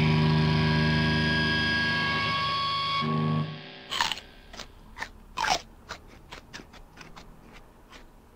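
Last chord of a distorted electric guitar in a punk rock band, ringing out and slowly fading, then cut off about three and a half seconds in. After it, a string of faint, irregular clicks and brief noises.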